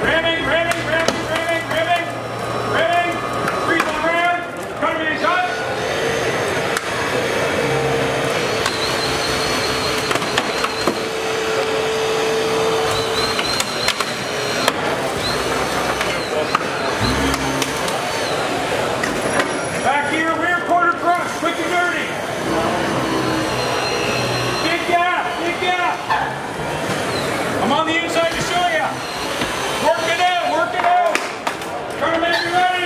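Battery-powered Hurst hydraulic rescue tool running as it forces a car's door away from the body, making a dense steady noise through the middle of the stretch. Men's voices come at the start and again near the end.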